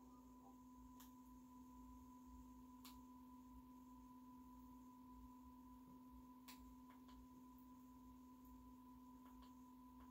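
Near silence: room tone with a faint steady hum and a few faint clicks.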